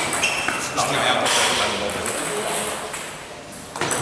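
Table tennis rally: the ball clicking sharply off bats and the table in quick exchanges, with voices in a large hall.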